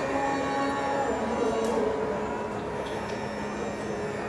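Carnatic vocal and violin music: long held melodic notes over a steady drone, with almost no drum strokes, easing slightly in level toward the end.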